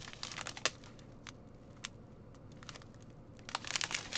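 Small plastic bags of diamond painting drills crinkling as they are handled, in scattered light crackles that thin out in the middle and grow denser near the end.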